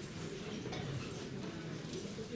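Quiet club room noise with faint scattered ticks and clicks.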